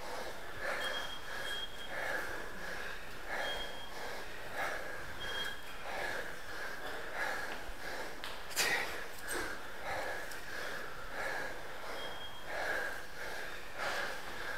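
A stair-race runner panting hard and rhythmically, about one and a half breaths a second, out of breath from running flat out up a tower stairwell. One sharp knock comes about eight and a half seconds in.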